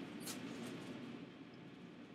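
Quiet room tone with one faint, brief noise about a quarter second in.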